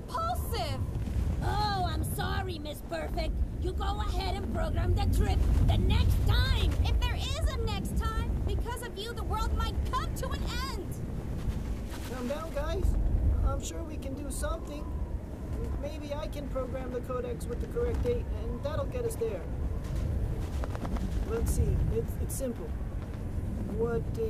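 Film soundtrack: voices or vocal sounds with no clear words over a steady deep rumble that swells about five and again about thirteen seconds in, with scattered clicks.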